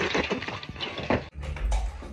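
Water spraying and splashing out of a wall pipe burst by a hammer, hitting a man in the face; it cuts off a little over a second in, followed by a low thump.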